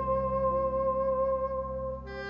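Instrumental music: a saxophone holds one long note with a slight vibrato over sustained cellos and double bass.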